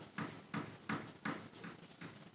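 Paintbrush working acrylic paint on paper: a series of faint, soft dabbing strokes, about three a second, as the colour is mixed in.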